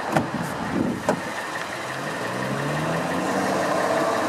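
Pickup truck front door latch clicking as the outside handle is pulled, with a second knock about a second later as the door swings open. A steady engine hum runs underneath.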